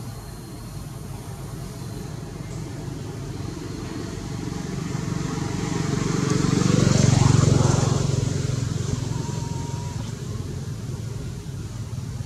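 A motor vehicle driving past, its engine growing louder to a peak about seven seconds in and then fading away.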